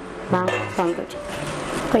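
Speech: a short spoken Arabic 'yes' (na'am), followed by a low, steady hum.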